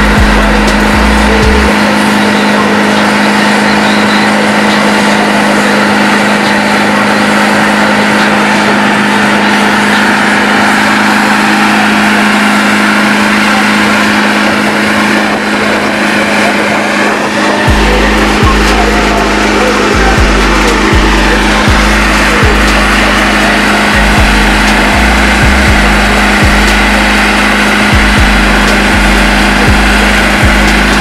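Pickup truck engine held at high revs during a tyre-smoking burnout. Loud music with a deep bass beat plays alongside it; the bass drops out for a long stretch in the middle and returns about eighteen seconds in.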